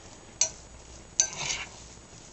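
A spoon stirring couscous salad in a glass measuring jug: a sharp clink of the spoon against the glass, then a second clink about a second in followed by a short scrape through the grains.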